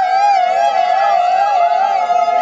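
A woman's long, high-pitched cry held on one note and wavering up and down in pitch: a celebratory ululation.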